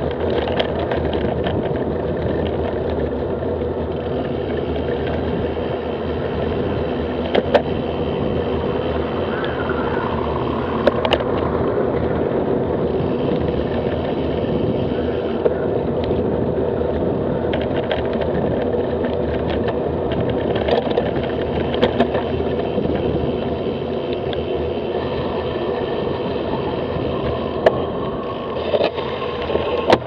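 Wind rushing over a bicycle-mounted camera's microphone, with steady tyre and road noise as the bike rides along, and a few sharp knocks.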